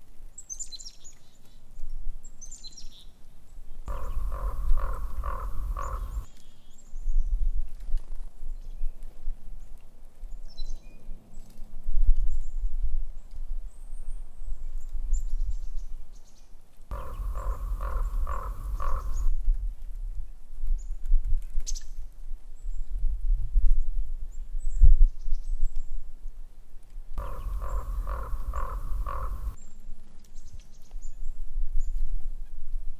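A bird calling three times, each a series of repeated pitched notes lasting about two seconds, with faint high chirps in between. A steady low wind rumble runs underneath.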